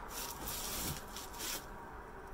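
Faint rustling and rubbing, with a few short soft swishes near the start, at about half a second and at about one and a half seconds.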